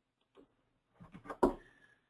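A short pause broken by a few faint clicks, the loudest a single sharp click about a second and a half in.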